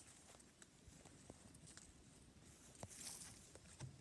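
Near silence outdoors, with faint footsteps and a few small scattered clicks, and a brief soft rustle about three seconds in.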